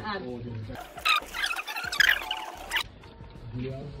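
A wooden spoon working soft, wet fufu dough against an aluminium pot as water is mixed in, giving about two seconds of squeaky, squelching scraping.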